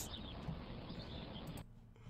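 Faint, even background hiss from the end of the cartoon's soundtrack, cutting off suddenly about a second and a half in and leaving near silence.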